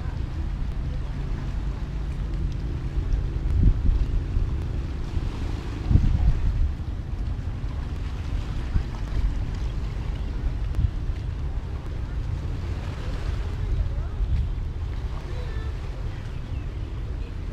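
Wind buffeting the microphone: a low rumble throughout, with stronger gusts about four and six seconds in. Under it, an engine hums low and steady through roughly the first half.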